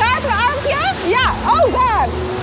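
Steady rush of water from a river rapids boat ride, with high-pitched wordless voice sounds swooping sharply up and down in pitch several times over it.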